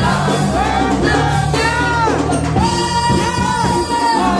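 Live gospel praise singing: a woman's lead voice with group vocals over instrumental accompaniment with steady low bass notes. The lead voice swoops up and down, then holds a long high note through the second half.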